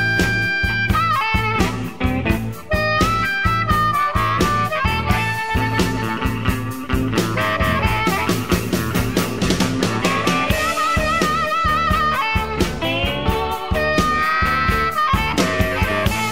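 Chicago blues band recording in an instrumental passage with no singing: a lead line of bent, wavering notes over a steady beat of drums, bass and rhythm guitar.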